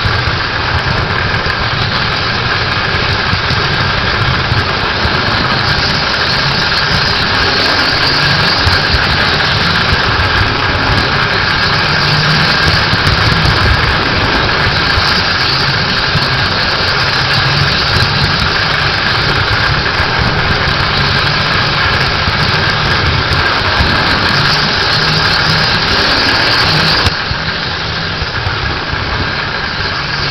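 Model train running on three-rail tubular track, heard up close from the camera car being pushed along it: a steady wheel-and-rail rumble with a steady high motor whine over it. It gets a little quieter about three seconds before the end.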